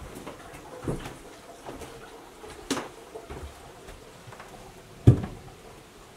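Footsteps and knocks inside an empty building: a few irregular thumps, the loudest about five seconds in, over faint room hiss.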